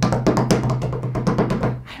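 A makeshift drum roll: hands drumming rapidly and unevenly on a tabletop, over background music with a steady low note that stops near the end.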